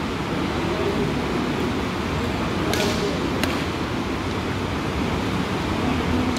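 Steady rushing background noise with a faint murmur of voices, and two short sharp snaps about half a second apart a little before the middle.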